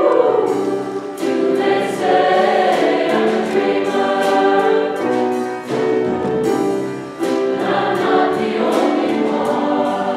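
Large mixed choir singing in harmony with sustained chords, accompanied by piano and drum kit, with a brief dip between phrases about seven seconds in.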